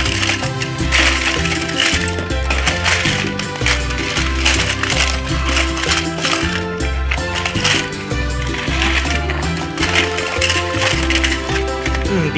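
Plastic and die-cast Thomas & Friends toy trains clattering against one another in many short clicks as a hand rummages through a heap of them, over background music with a steady bass line.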